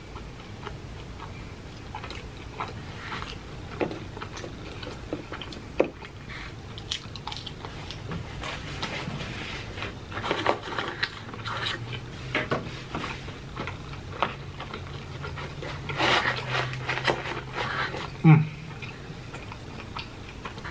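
A person chewing and biting cheese pizza crust, with wet mouth sounds and lip smacks scattered throughout, and one louder smack near the end.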